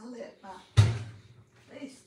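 A single sharp thump just under a second in, the loudest sound, amid bits of talk.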